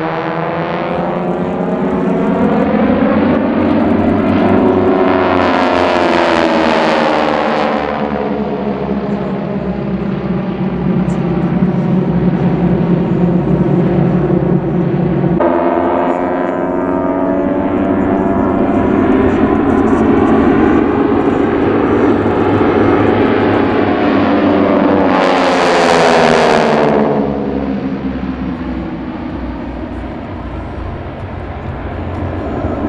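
Four North American AT-6 Texans' Pratt & Whitney R-1340 radial engines droning together in formation flight, the pitch sliding down and up as they pass. A harsher propeller rasp swells twice, about six seconds in and again about 26 seconds in, and the sound jumps abruptly at a cut about halfway through.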